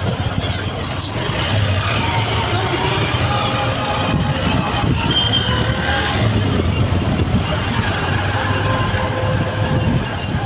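Engines of several vehicles in slow-moving road traffic running steadily, with a low rumble.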